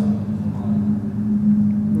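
A steady low hum that runs evenly, without a break.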